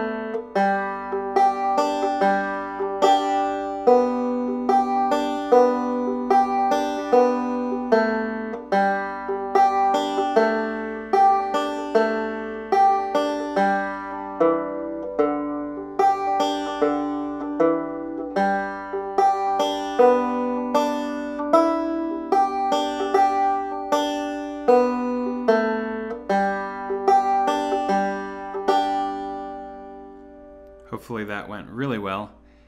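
Five-string banjo in open G tuning picked slowly in two-finger thumb-lead style: an even run of single plucked, ringing notes, about two a second, playing the tune's A part. The playing stops near the end.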